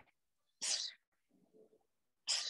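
A short, sharp hissing exhale timed with an elbow strike, about half a second in, followed by a faint rustle.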